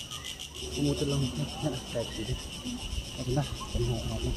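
Insects chirping in a steady, evenly pulsing high drone, with low voices coming in about a second in.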